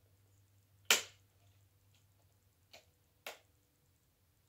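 Sharp clicks of small plastic packaging being worked open by hand: one loud snap about a second in, then two smaller clicks near the end.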